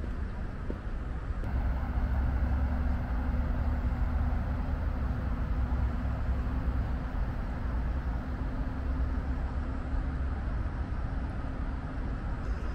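Steady outdoor ambience made up mostly of a low rumble, typical of road traffic, growing slightly louder about a second and a half in.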